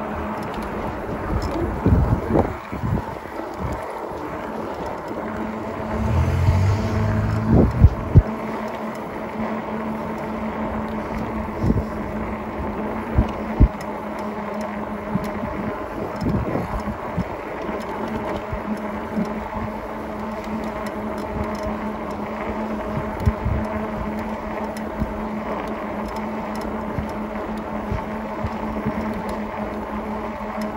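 Electric bike hub motor whining steadily while riding, with wind buffeting the microphone and a few short knocks from bumps in the road surface.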